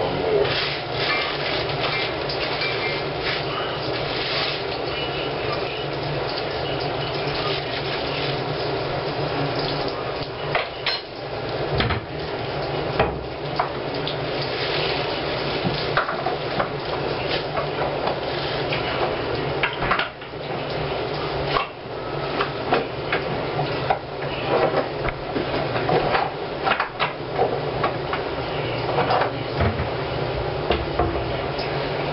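Dishes and utensils clinking and knocking irregularly during food preparation, over a steady low hum.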